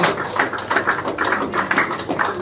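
A small group of people clapping, a dense, irregular patter of hand claps.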